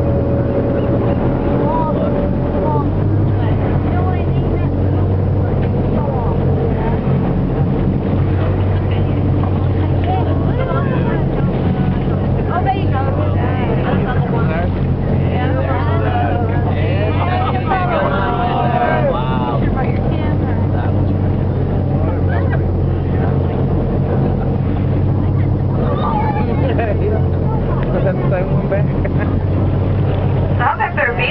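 Whale-watching boat's engine running with a steady low hum throughout.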